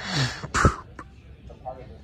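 A person clearing their throat: a short rasping sound with a falling voice, then a sharp cough about half a second in, which is the loudest sound.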